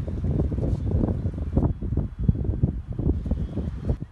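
Wind buffeting a phone's microphone: an uneven low rumble that gusts up and dips.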